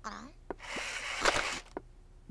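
Crong, a cartoon baby dinosaur, gives a short babbling vocal sound that glides down then up in pitch, followed by about a second of breathy, hissing noise with a few small clicks.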